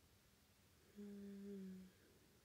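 A woman's short closed-mouth hum, a single steady 'mm' lasting about a second and dipping slightly in pitch at the end, after about a second of near silence.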